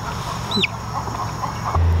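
A baby chick peeping once: a short, high whistled note that falls in pitch, about half a second in, over a steady background hiss. A low hum comes in abruptly near the end.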